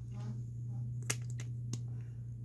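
A quick run of about four small sharp clicks and smacks, the first the loudest, about a second in, as lip gloss is put on with its wand applicator. A steady low hum runs underneath.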